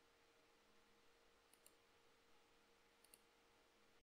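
Near silence: faint room tone with a low steady hum, broken by two faint double clicks, one about a second and a half in and another about three seconds in.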